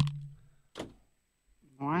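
Talk between radio hosts with a pause of about a second, broken by one short, sharp click; a voice comes back near the end.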